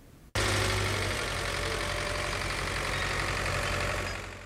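Tractor engine running steadily while pulling a seed drill through tilled soil. It cuts in suddenly about a third of a second in, after a brief near-quiet moment.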